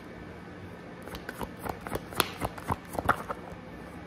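A deck of tarot cards being shuffled by hand: a run of quick, irregular card clicks and slaps starting about a second in.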